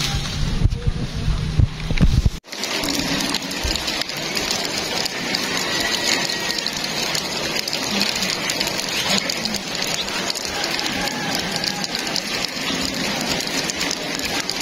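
Steady rain falling, an even hiss. At the start, about two seconds of low rumbling noise on the microphone that cuts off suddenly.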